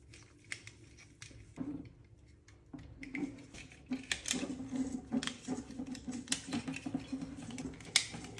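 Handling noise of a wall dimmer switch and its wiring: scattered small clicks, taps and plastic rubbing as the wires and the switch are worked into the installation box, busier in the second half. A faint low hum runs underneath in the second half.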